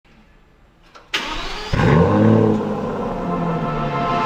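Aston Martin DB11 engine starting: it cranks about a second in, catches with a rise in revs, and settles into a steady fast idle.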